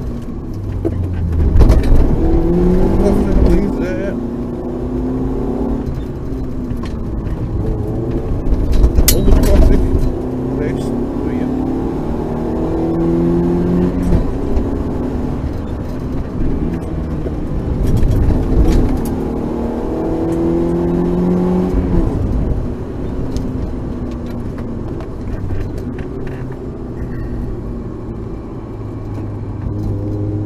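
Rally car engine heard from inside the cabin, revving up through the gears with its pitch climbing and dropping back at each shift, then easing off. Loud thumps land about two seconds in, around nine seconds in and around twenty-one seconds in.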